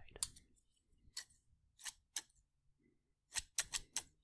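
A pair of scissors snipping, about eight short, sharp cuts at uneven intervals, with a quick run of three or four near the end.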